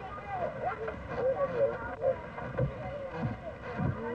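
Several children's voices chattering and calling out over one another, with a faint steady hum and low rumble underneath.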